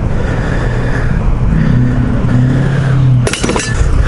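A vehicle engine running steadily at a low idle, with a short clatter a little over three seconds in.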